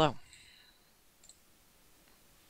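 Faint computer mouse clicking a little over a second in, against near-silent room tone.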